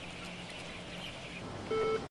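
Poultry-shed background: a steady low hum with faint chicken calls, and a short, steady higher call near the end.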